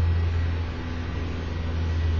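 Steady low hum with an even hiss over it, dipping a little around the middle.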